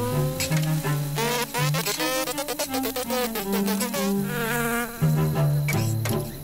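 Animated ladybug's buzzing flight sound effect, its pitch rising in the first second and then wavering up and down as it flies about, over low sustained tones.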